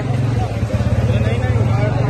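A motorcycle engine running close by, a steady low pulsing note, under the voices of a street crowd.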